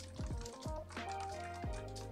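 Computer keyboard being typed on, a few separate irregular keystrokes, over soft background music with held notes.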